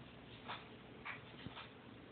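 Cat licking food off its paw: a few short, faint licks about half a second apart, with one light tap among them.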